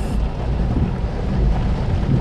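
Steady low rumble with a hiss of rain, heard from inside a car waiting in heavy rain.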